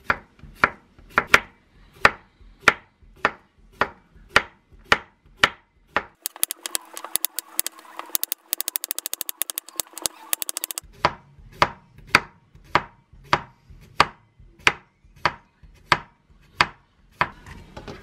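Kitchen knife slicing a cucumber thinly on a wooden cutting board, each stroke a sharp knock about twice a second. From about six seconds in, the knocks come much faster for about five seconds, then the steady slicing resumes and stops near the end.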